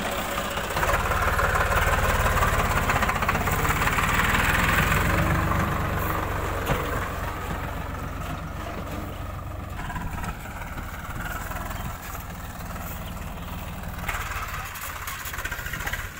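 Swaraj tractor's diesel engine running steadily as it hauls a loaded straw trolley, louder for the first several seconds, then somewhat quieter.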